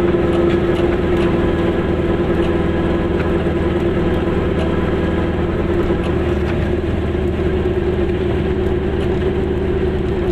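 Goggomobil's small two-stroke twin engine running steadily as the car drives slowly, heard from inside the cabin: an even, pitched engine note that holds nearly constant.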